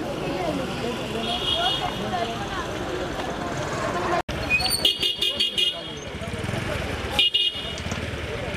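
Crowd of people talking over one another while a high-pitched vehicle horn sounds: a toot about a second in, a run of quick beeps around five seconds, and a short toot near the end. The sound drops out for an instant about four seconds in.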